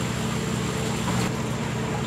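Steady low machine hum under a constant hiss of running water, with no change in level.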